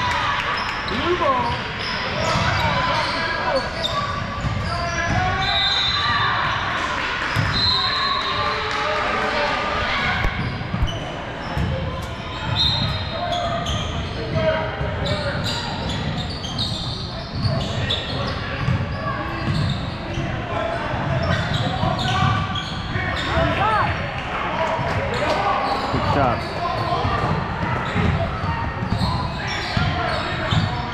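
Basketball game on a hardwood gym floor: the ball bouncing as it is dribbled, with the chatter of players and spectators echoing through the large hall.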